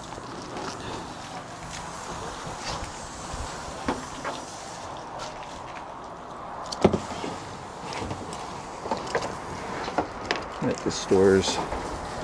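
Scattered clicks and knocks from handling the fittings of an RV's outdoor kitchen, the sharpest about seven seconds in and a quick run of lighter ones near the end, over a steady outdoor background hiss.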